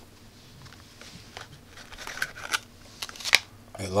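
Handling of a small clear plastic case and the plastic bag inside it as a small electronics board is lifted out: a scatter of light clicks and crinkles, the sharpest click a little after three seconds in.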